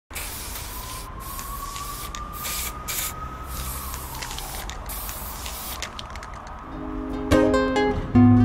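Aerosol spray paint can hissing in a series of short spurts, with a faint tone under it that rises a little and then slides down. Near the end, plucked guitar chords come in, louder than the spray.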